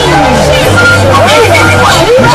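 Loud, distorted yelling and screaming voices with swooping pitch, over electronic music with a steady bass.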